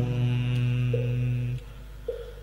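A voice chanting Vietnamese devotional verse holds the last syllable of a line on one long, low, steady note. The note ends about a second and a half in, leaving a brief quiet pause.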